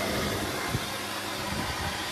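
Small electric household flour mill (chakki) running steadily, grinding grain fed from its hopper, with a constant motor hum under an even grinding noise.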